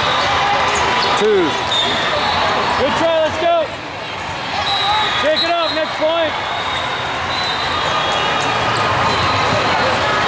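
Steady din of a volleyball tournament hall, with balls being hit and bounced on many courts. Players' short shouted calls come once at about a second, in a quick pair near three seconds and in a quick run of four between five and six seconds.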